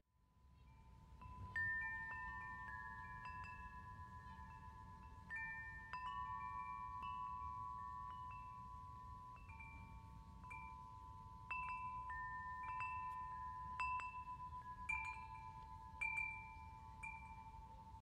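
Quiet chimes ringing: clear, high bell-like notes struck at irregular moments, each ringing on for several seconds and overlapping the next, starting about a second in.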